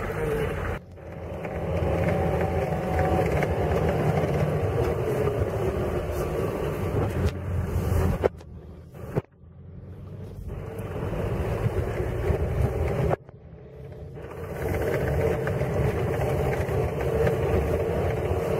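Cabin sound of a VAZ-2120 minivan driving on a rutted dirt track: its engine is running and its mud tyres are rolling in a steady low drone. The sound drops away suddenly about a second in, again about eight seconds in and again about thirteen seconds in, each time building back up over a second or two.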